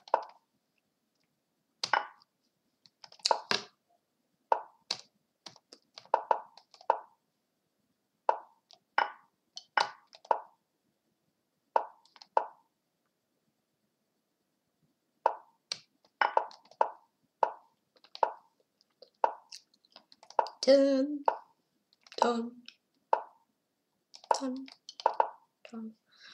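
Lichess piece-move sounds: a short plop for each move, coming irregularly about one or two a second through a fast bullet game.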